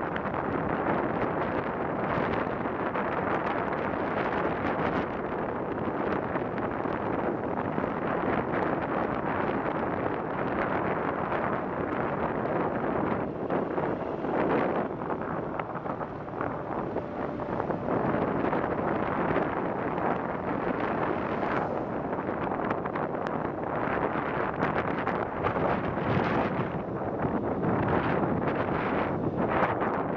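Steady rush of wind on the microphone of a moving moped, with the moped's running noise mixed in underneath.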